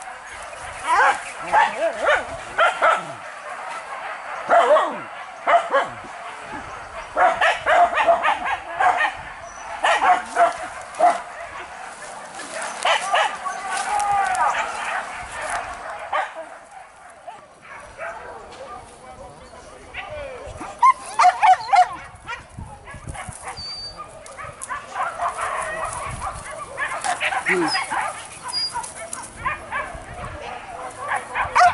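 Hunting dogs barking and yelping in clusters of quick, sharp barks, with a quieter lull a little past halfway, as the dogs work the brush on a wild boar hunt.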